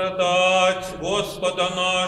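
Orthodox liturgical chant sung in long held notes that slide from one pitch to the next.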